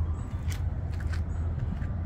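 A steady low rumble, with two short faint clicks about half a second and a second in.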